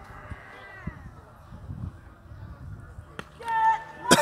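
Distant voices of players calling across an open field, then a single sharp crack a little after three seconds in, a cricket bat striking the ball, followed at once by loud excited shouting.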